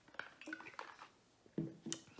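Faint swallows of water from a plastic shaker bottle, then a sharp knock near the end as the bottle is set down on the table.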